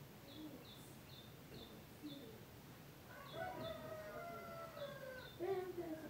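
Faint bird calls: short high chirps repeating every fraction of a second, then a longer pitched call of about two seconds starting about three seconds in, and a shorter one near the end.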